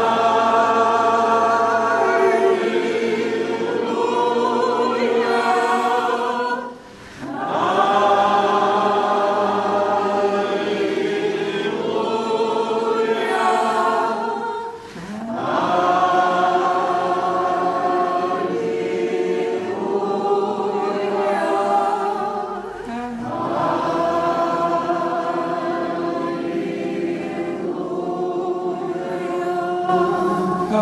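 Church congregation singing together in long, sustained phrases, four of them, with brief breaks between.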